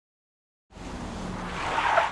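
A car pulling up and stopping: a low engine hum with tyre and road noise that begins under a second in and swells to its loudest as the car comes to a stop.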